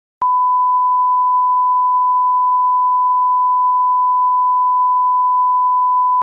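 Broadcast line-up test tone accompanying TV colour bars: a single steady, unbroken pure tone that switches on with a click just after the start.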